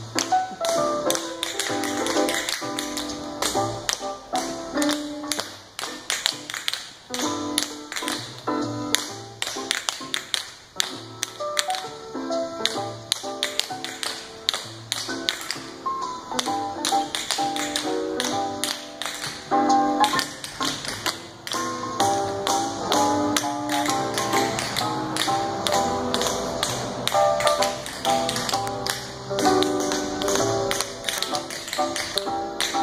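Tap shoes of several dancers striking a concrete floor in quick rhythmic taps, over music playing along.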